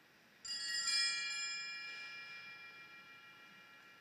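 Altar bells rung at the elevation of the chalice, marking the consecration of the wine at Mass. A few quick strikes about half a second in, with the bells then ringing out and fading over the next few seconds.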